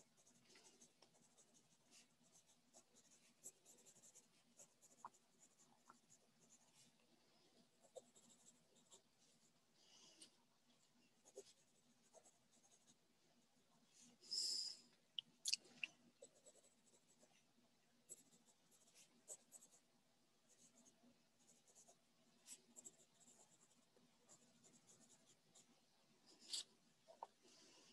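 Near silence: faint room tone with scattered soft clicks and scratches, a short hiss about fourteen seconds in, then a sharp click.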